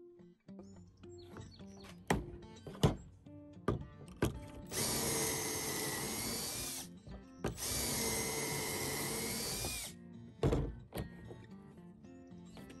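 Cordless drill boring pocket holes through a pocket-hole jig. It makes two runs of about two seconds each with a steady whine, with a few sharp knocks before and after.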